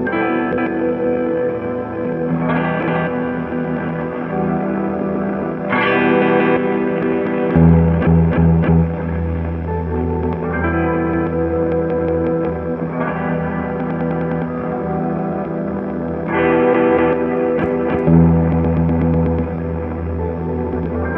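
Semi-hollow electric guitar played through effects pedals, including a Hologram Electronics Infinite Jets, in an ambient improvisation. A new chord is struck every two to four seconds and each one rings on at length. A deep low sustained layer swells in about halfway through and again near the end.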